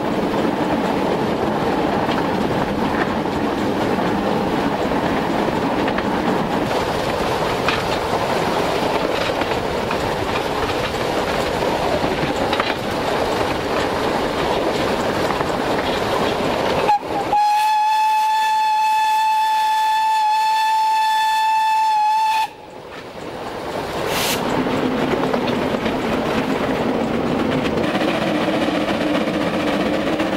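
Px48 narrow-gauge steam locomotive running along with a steady rumble and rattle. About 17 seconds in its steam whistle gives one long blast of about five seconds on a single steady note, which cuts off suddenly before the running noise returns.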